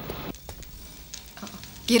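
Faint, irregular crackling and small pops of a wood fire burning in a fireplace. A man's voice starts just before the end.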